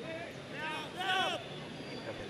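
Mostly speech: a man's voice speaks briefly, from about half a second to well over a second in. Under it runs the steady background noise of a football crowd.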